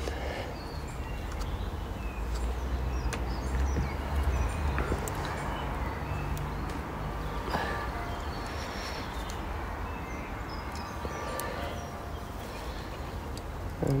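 Sparse faint clicks and small knocks of a metal polar-scope bracket being handled and seated in an equatorial mount's polar-scope housing, over a steady low rumble.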